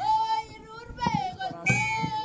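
Girls' choir singing a Kalenjin folk song: a high voice holds long notes with slight bends in pitch, over drum beats.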